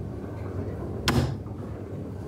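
Door of a commercial front-loading washing machine shut, a single sharp click about a second in, over a low steady hum.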